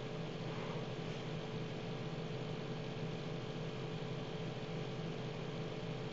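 Steady background hiss with a constant low hum and a faint steady tone underneath, unchanging throughout: room tone from the recording microphone.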